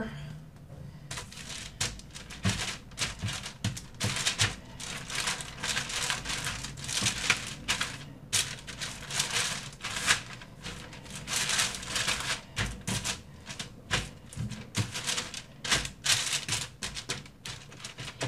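Parchment paper crinkling and rustling on a metal baking sheet as bread dough is folded and rolled on it, in a quick, irregular run of rustles and light clicks.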